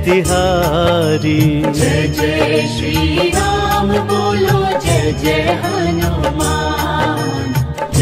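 Hindi devotional bhajan music: a wavering melodic lead line over a steady rhythmic beat.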